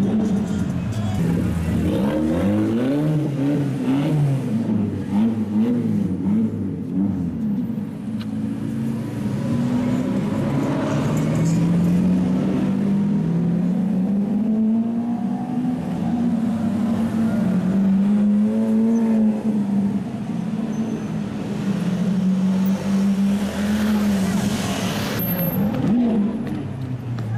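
Ferrari 458 Speciale's V8 blipping its revs several times in the first few seconds, then running at low revs with slow rises and falls in pitch as it pulls away.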